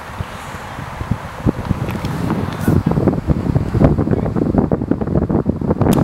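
Wind buffeting the camera microphone: a low, irregular rumble that grows stronger about halfway through.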